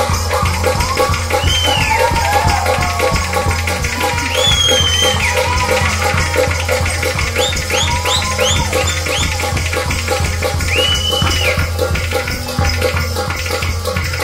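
Kashmiri wedding dance music with a quick, even percussion beat and short high sliding melodic notes over it, without singing.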